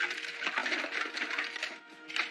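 Small hard objects clattering and rustling as a hand rummages through a box, a dense stream of rapid clicks that thins out near the end, with soft music underneath.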